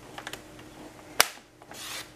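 Stampin' Up paper trimmer cutting patterned paper: a few light clicks, one sharp click a little over a second in, then a short hiss of the blade sliding through the paper near the end.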